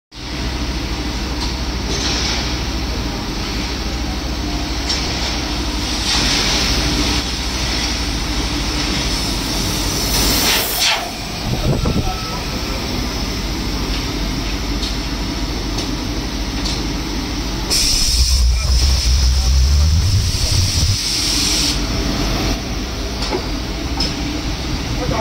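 Robotic car-bumper punching and welding machine running: a steady low hum broken by repeated hisses of air, the loudest about ten seconds in and a longer one from about 18 to 22 seconds, joined by a low rumble.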